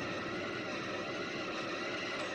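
A steady, dense mechanical drone, like engine or machinery noise.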